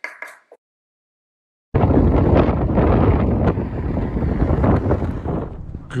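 Wind buffeting the microphone, starting abruptly about two seconds in and staying loud and rough. A few brief faint sounds come in the first half second.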